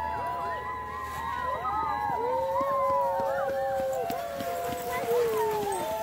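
A team of sled dogs yipping and howling, many voices at once and overlapping, with some long calls that hold and then fall in pitch.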